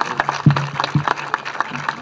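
Audience applauding with many separate claps, over a steady low tone.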